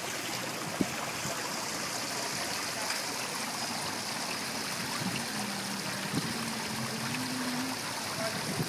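Fountain water running steadily down and into a stone basin, a continuous even wash of flowing water.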